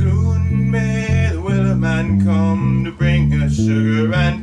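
Electric bass guitar plucking held notes through an F–C–Dm–Am progression in A minor, with a man singing the melody over it.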